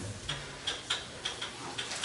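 Duster wiping a whiteboard in quick strokes: a run of short, sharp rubbing sounds.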